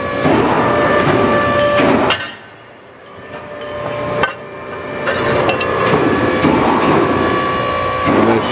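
Edwards 90-ton hydraulic ironworker running while its notcher cuts quarter-inch steel plate, a steady machine hum with a constant tone through it. The sound drops away sharply about two seconds in, builds back up over the next few seconds with a single click about four seconds in, and is loud again near the end.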